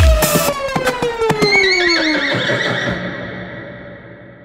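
The electronic track's heavy beat stops just after the start, leaving a long tone that slides down in pitch. About a second and a half in, a horse's whinny sounds over it, and the whole mix fades away toward the end.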